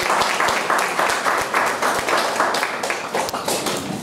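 Congregation applauding: a dense, irregular patter of many hands clapping, which eases off near the end.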